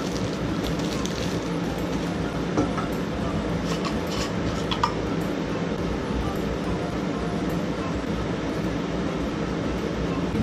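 A few light clicks and crinkles as a small brass alcohol burner is unwrapped from its plastic and handled, over a steady background hum.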